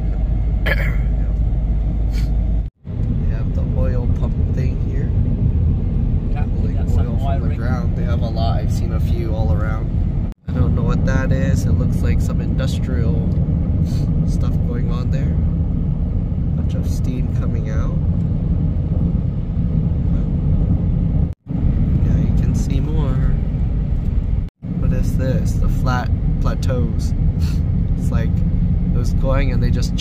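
Steady low road and tyre noise inside the cabin of a Tesla Cybertruck cruising at highway speed, with no engine note from the electric truck. The sound cuts out briefly four times.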